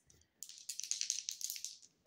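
Two dice rattling as they are shaken in a cupped hand: a quick run of small clicks starting about half a second in and stopping just before they are thrown.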